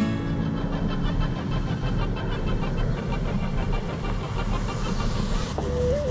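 Pickup truck driving along a street, with steady engine and tyre noise. Near the end it gives way to a deeper rumble.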